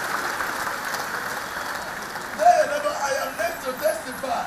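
Congregation applauding, an even clatter of many hands. From about halfway, short voiced sounds rise over the applause and are the loudest part.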